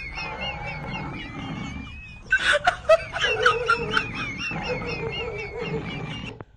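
A person snickering with stifled laughter in short, wavering bursts, breaking off about two seconds in and starting again about a second later.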